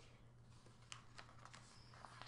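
Faint clicking of a computer keyboard, a few scattered key presses, over a low steady hum.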